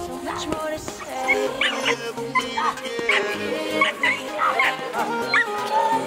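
Belgian Malinois puppy barking in a quick run of about ten short, high yaps during bite-work teasing, over a song playing in the background.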